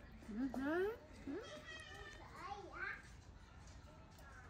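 Baby macaque monkey giving several short, high-pitched rising squeals, begging calls for the food held out to it.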